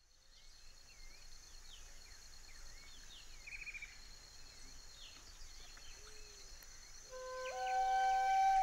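Faint countryside ambience fading in: scattered short bird chirps and one brief trill over a soft hiss, with a thin steady high tone underneath. About seven seconds in, a flute enters with long held notes.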